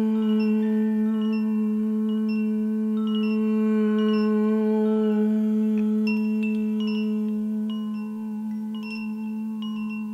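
Koshi chimes tinkling, with many short high ringing notes over a steady, sustained low drone tone. The chime notes grow busier about halfway through, and the sound begins to fade near the end.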